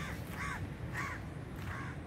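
A crow cawing four times in quick succession.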